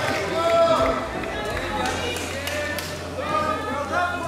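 Indistinct talking, quieter than the announcements around it, with no words made out.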